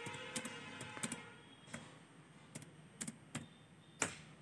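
Computer keyboard keystrokes: about eight separate taps at irregular intervals as a line of numbers is typed and entered. A faint steady hum with several pitches fades out in the first second and a half.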